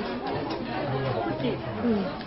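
Indistinct chatter of several people talking at once in a restaurant dining room.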